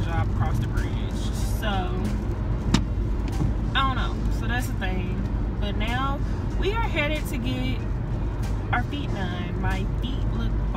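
Steady low road and engine rumble inside the cabin of a moving Jeep Renegade, under a voice and background music. One sharp click comes a little before 3 seconds in.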